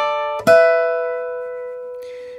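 Steel-string acoustic guitar notes plucked with a thumb pick and index finger. A fresh pluck comes about half a second in and is left to ring, fading away slowly.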